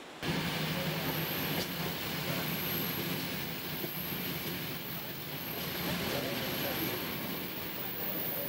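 Flåm Railway train running steadily, heard from inside a carriage, with indistinct voices underneath. It starts abruptly about a quarter of a second in.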